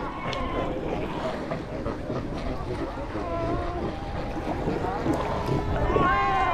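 Cape fur seal colony calling: many overlapping wavering bleats over wind and water noise on the microphone, with one louder, nearer bleat right at the end.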